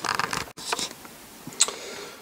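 Handling noise from a plastic strip being worked by hand on a wooden former: a few soft clicks and rustles, with one sharper click about one and a half seconds in.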